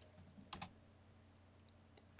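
Near silence with two faint computer keyboard keystrokes about half a second in.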